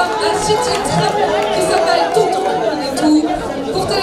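Several people talking at once: a steady murmur of overlapping chatter.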